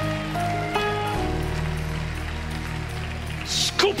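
Worship band's sustained keyboard chords over a steady low bass note, shifting to a new chord about a second in.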